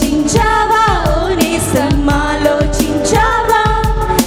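Women singing a Christian worship song into microphones, a lead voice with backing vocals, over a band accompaniment with a steady drum beat.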